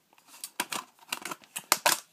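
Handling noise: an irregular run of sharp clicks and scrapes of hard plastic being handled, loudest near the end.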